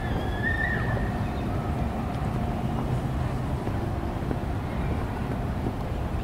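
Steady low rumbling outdoor noise with an even level, and a faint wavering tone in the first second.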